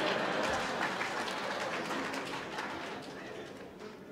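Audience in a hall laughing and clapping, a steady crowd noise that dies away over the few seconds.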